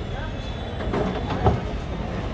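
Busy street-food stall ambience: a steady low rumble with faint background voices, and one sharp knock about a second and a half in, as ingredients go into the iron pan.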